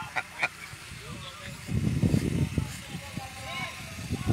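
Men laughing hard: a quick run of short laughs at the start, then a louder low burst of noise for about a second around the middle.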